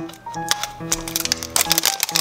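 Crackling and crinkling clicks of a toy surprise ball's plastic wrapper being peeled away by hand, thickest near the end, over background music with steady held notes.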